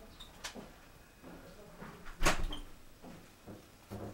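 A single loud thump a little over two seconds in, with a few softer knocks before it.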